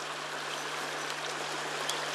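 Steady rushing noise, even throughout, with a low steady hum beneath it and a faint click near the end.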